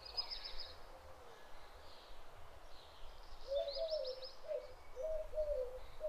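Birds calling: a short, high, rapid chirping trill at the start and again about halfway, and a series of low cooing calls, typical of a dove, through the second half.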